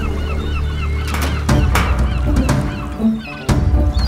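Seagulls crying, many short overlapping calls, over background music with low sustained notes and a few sharp percussive hits.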